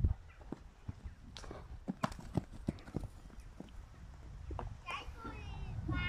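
A pony trotting loose on a sand arena: a run of uneven hoof knocks. There is a loud knock at the very start and a child's voice briefly near the end.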